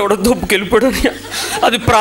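Only speech: a man talking into a microphone, in Telugu.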